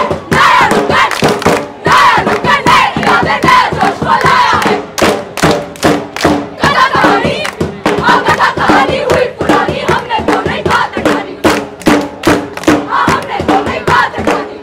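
A group of women's voices singing and shouting together, loud and energetic, over a regular beat of sharp percussive strikes that grows denser about five seconds in.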